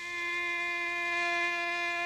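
A single note on a bowed string instrument, held steadily at one pitch, from the film's score.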